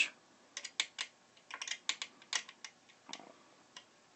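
Irregular light metal clicks and taps of a small hex key (Allen wrench) being worked into the screws of a 3D printer's extruder head. The key is not seating, because it is not the 2 mm size it was taken for.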